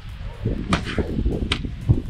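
Wind buffeting the camera microphone on a moving chairlift: an irregular low rumble, with two short sharp clicks, about midway and near the end.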